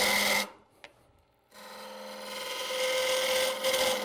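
Wood lathe spinning an ash leg blank while a hand-held turning tool cuts it, giving a steady scraping hiss of shavings with the lathe's hum. It stops about half a second in, is silent for about a second, then starts again and grows louder.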